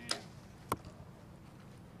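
Compound bow shot: a sharp crack as the string is released, then about half a second later a second sharp crack as the arrow strikes the target.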